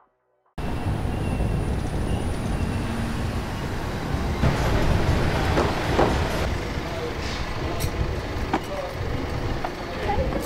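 City street noise: a steady low rumble of traffic with faint, indistinct voices, starting suddenly about half a second in.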